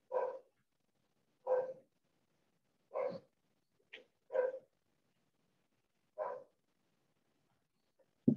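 A dog barking: five single barks spaced about a second and a half apart, with a short, higher yip just before the fourth, heard over a video call's audio.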